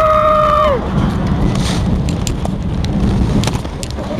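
A rider's long held shout ends under a second in. After that, the steel roller coaster train rolls along its track with a low rumble and scattered clicks.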